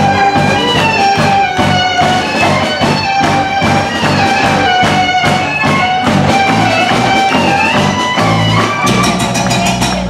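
Live band playing an instrumental passage: fiddle and guitars over electric bass and drums with a steady beat. A flurry of quicker percussion hits comes near the end.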